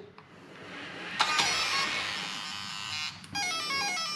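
Castle Creations electronic speed control powering up and sounding its start-up tones through the RC car's brushless motor. A steady tone starts about a second in, then a quick run of short notes steps down in pitch near the end.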